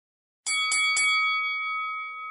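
Intro logo sting: a bright bell-like chime struck three times in quick succession about half a second in, then ringing on and slowly fading.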